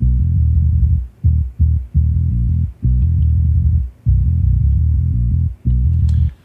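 Soloed low-band channel of a DI electric bass from Submission Audio's EuroBass virtual instrument, playing a metal riff in phrases broken by brief gaps. The channel is filtered so that only the low end and sub remain, with no high end: "just a lot of sub information".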